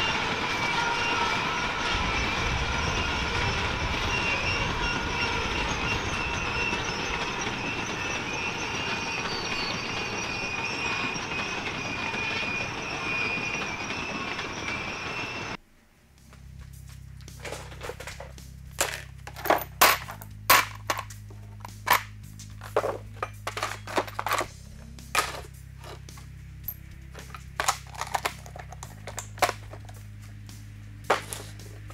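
A long freight train rolling past, a steady rumble and clatter with high, steady whining tones from the wheels. About halfway through it cuts off suddenly, and background music follows, with a stepping bass line and sharp drum hits.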